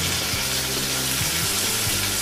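Brinjal pieces frying in oil in a steel kadai, a steady sizzle with a few faint light clicks.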